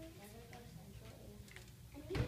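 A quiet lull in a hall: faint, indistinct voices and a few light clicks.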